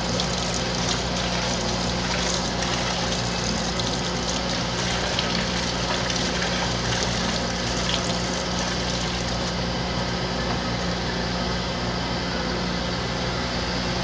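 Grinding coolant pouring steadily from a jug over a tube magnet and splashing into the separator tank below, over a steady low machine hum.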